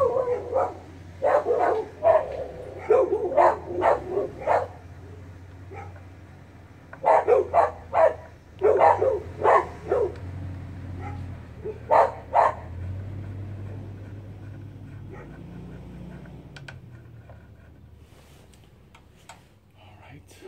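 A dog barking repeatedly in clusters of several short barks, over the first twelve seconds or so, then stopping. A low steady hum runs underneath, and a few faint ratchet clicks come near the end.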